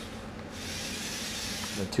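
Small six-wheel-drive robot's electric drive motors running as it moves across carpet at about a quarter of top speed: a steady high hiss that grows a little louder about half a second in.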